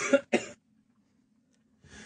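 A man coughs twice, two short bursts about a third of a second apart. Then only a faint steady hum is left.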